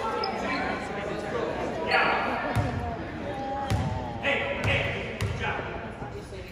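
Basketball being dribbled on a hardwood gym floor before a free throw, about five bounces in the second half, under spectators' chatter echoing in the gym.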